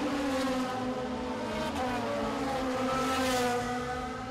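Touring race car engines running at high revs on track, a steady engine note that fades a little near the end.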